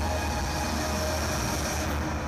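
A steady deep rumble with a hiss over it, fading slightly toward the end.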